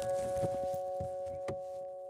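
A sustained, bell-like ringing chord from a programme music sting, held and slowly fading, with a soft click about one and a half seconds in.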